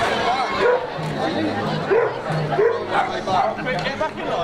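A dog barking and yapping in short repeated calls over crowd chatter.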